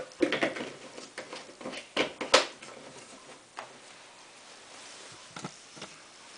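Knocks and clatter from handling the conditioner bottle, dosing cap and the washing machine's detergent drawer: a quick run of taps, one sharp knock about two seconds in, then a few scattered knocks.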